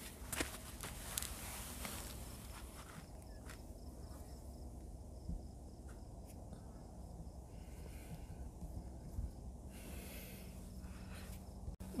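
Faint outdoor background noise with a few soft, sharp clicks, the loudest just after the start and a smaller one about five seconds in.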